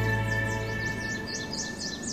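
Closing chord of a TV show's intro jingle fading out, with quick bird-like chirps over it.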